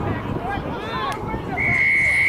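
Players shouting, then a rugby referee's whistle blows one steady, loud blast starting near the end.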